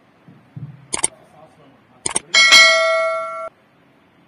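Subscribe-button sound effect: two sharp clicks about a second apart, then a bright notification bell ding that rings for about a second and cuts off suddenly.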